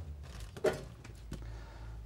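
Aluminium sheet panel being handled and positioned: a short rustle at the start and two light clicks or taps of the metal, over a steady low hum.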